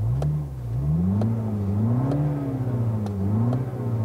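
2018 Mini Cooper Clubman John Cooper Works' turbocharged 2.0-litre four-cylinder revved while parked in Sport mode, heard from the driver's seat. The pitch rises and falls in a few slow blips, the biggest peaking about halfway through, with a deep, aggressive exhaust note.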